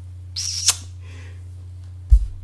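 A kiss blown with puckered lips: one short, high squeaky smack about half a second in, ending in a sharp pop.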